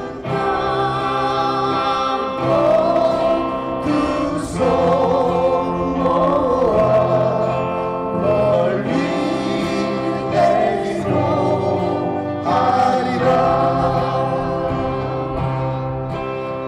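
Two men singing a Korean acoustic folk song in harmony over acoustic guitar, live through a PA system. The notes are long and held, with vibrato.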